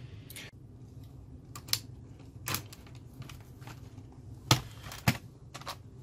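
Scattered short clicks and light knocks of a laptop's plastic case and parts being handled and fitted back together, about six in all, the loudest two near the end, over a faint steady low hum.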